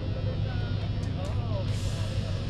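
People talking at a distance over a steady low rumble, with a couple of brief hisses about a second in and near the end.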